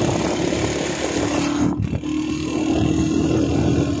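Motorcycle running steadily on the move, a steady engine hum under a rush of wind and road noise; the rush briefly drops out just before the halfway point.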